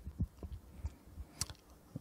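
Faint low thuds and one sharp click from a handheld microphone being handled and shifted in the hand between spoken phrases.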